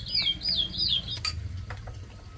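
A songbird singing a fast run of whistled notes, each sliding down in pitch, about four or five a second, stopping about a second in. Then a few light clinks of spoons against bowls.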